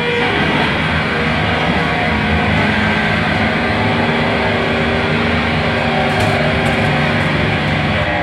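Live band playing loud and distorted: a dense wash of electric guitar and cymbals with a couple of held notes ringing through the middle, and no clear beat, heard from beside the drum kit.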